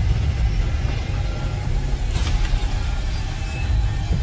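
A car driving, its engine and road noise a steady low rumble.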